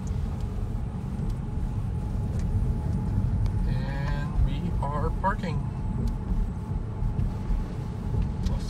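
Car cabin noise while driving: a steady low rumble of tyres and engine heard from inside the car, with a brief faint voice about four to five seconds in.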